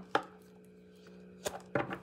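Three sharp taps on a tabletop as tarot cards are handled, the first and loudest right at the start and two more close together past the middle, over a steady low hum.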